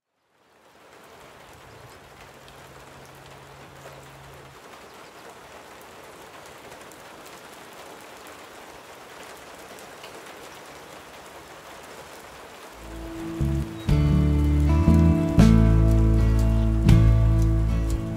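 Steady rain falling. About thirteen seconds in, guitar music starts and is much louder than the rain.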